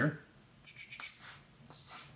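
A marker scratching across a small handheld blackboard as numbers are written, in several short scratchy strokes.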